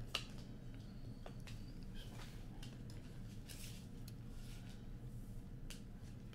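Trading cards being handled and dealt onto a table: scattered soft clicks and slaps, the sharpest just after the start, over a steady low room hum.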